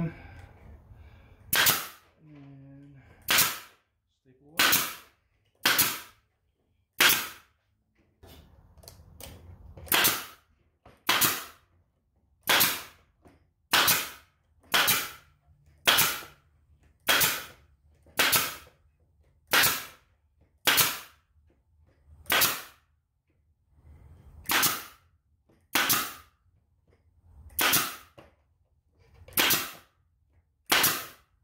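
Pneumatic staple gun firing half-inch staples through hardware cloth into a wooden frame, one sharp shot about every second, with a couple of short pauses, about twenty shots in all.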